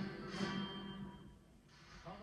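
Men singing together with band accompaniment, played through a television's speaker; a held final note dies away about a second in.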